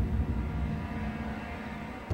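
Soft background score: a held low drone with faint sustained tones, with no breaks or strikes.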